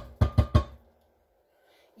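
Four quick knocks of a plastic sour cream tub against a glass blender jar within about half a second, each with a brief glassy ring, as the sour cream is knocked out of the tub into the jar.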